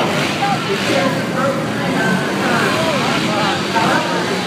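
Four-stroke dirt bike engines racing, their pitch rising and falling as the riders throttle on and off around the track, over crowd chatter.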